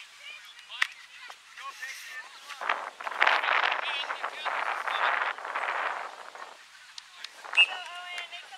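Unintelligible shouts and calls from players and spectators across a soccer field, swelling into a dense stretch of voices in the middle, with a sharp knock about a second in and a short loud high call near the end.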